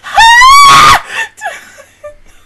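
A woman's high-pitched scream of just under a second, rising in pitch at the start and then held, followed by a couple of short laughing breaths.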